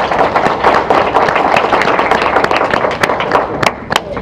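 A small audience applauding: dense clapping that thins out to a few scattered claps near the end.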